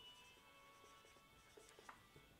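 Faint squeak and scratch of a marker pen writing a word on a whiteboard, with a couple of slightly sharper strokes near the end.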